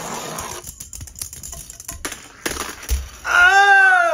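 Small Monster Jam Minis toy monster trucks rolling and clattering down a wooden track, with a run of light clicks and knocks as they tumble. Near the end a child lets out a drawn-out wordless shout that rises and falls.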